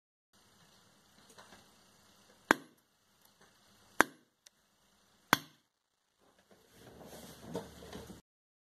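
Three sharp electrical snaps, spaced roughly a second and a half apart, as small capacitor-discharge pulses arc through a pencil lead clamped between alligator clips. Near the end a longer, irregular noise rises and falls.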